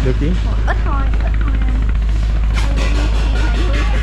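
A steady low drone, like a motor running, under a short spoken remark; from about two and a half seconds in, splashing water as a squid is scooped out of a floating sea pen with a hand net.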